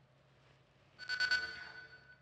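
Short musical transition sting of a TV news bulletin. After about a second of near silence it starts suddenly with a bright ringing tone that slowly fades away.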